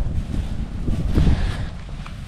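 Wind buffeting an outdoor microphone: an uneven low rumble with a faint hiss.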